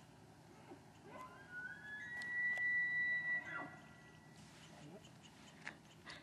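Distant bull elk bugling: one call that climbs from a low note into a long, high whistle, held for about two seconds, then falls away.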